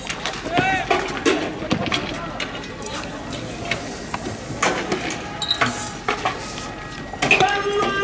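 Men's voices shouting in a street clash, with scattered sharp knocks and bangs. Near the end a steady held pitched tone comes in.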